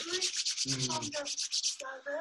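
Rapid scratchy rubbing, about ten strokes a second, stopping shortly before the end, with faint voices underneath.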